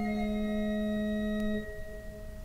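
Tabernacle pipe organ holding a steady sustained chord. The bass note and part of the chord release about a second and a half in, leaving a few higher tones sounding more quietly.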